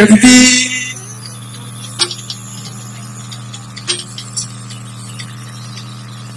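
Singing with band music stops within the first second, leaving a steady low hum with a few faint clicks, about two and four seconds in.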